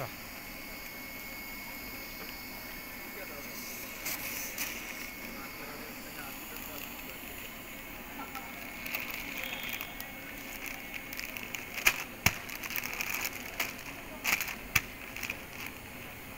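Continuous band sealer running with a steady hum and a thin high whine, while foil snack packets crinkle and crackle as they are handled and fed through it, with the sharpest crackles near the end.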